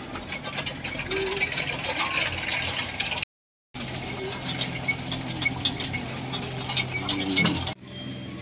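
Metal prayer wheels spun by hand one after another, clicking and rattling on their spindles as they turn, over low background music. The sound cuts out completely for a moment about a third of the way through.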